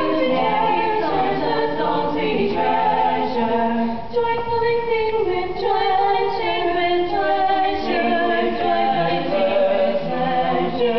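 A cappella vocal quartet of two women and two men singing in close harmony, several sustained notes moving together with no instruments.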